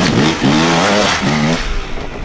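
Enduro dirt bike engine revved in short bursts, its pitch rising and falling about three times as the rider works the throttle at low speed over loose ground.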